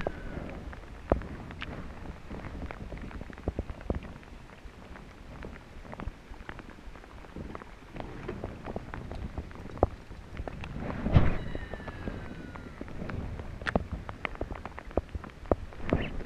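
Close handling noise from fighting a hooked bass on a rod and reel in a kayak: irregular clicks, taps and rustles, with a louder knock about eleven seconds in.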